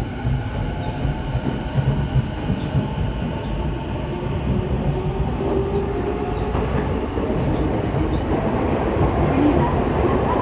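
Saikyō Line electric commuter train running at speed, heard from inside the carriage: a steady low rumble of wheels on rail with a faint motor whine, growing gradually louder.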